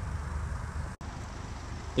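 2014 Cadillac ATS 2.0-litre turbocharged four-cylinder idling, a steady low rumble heard at the dual exhaust. The sound drops out for a moment about halfway through.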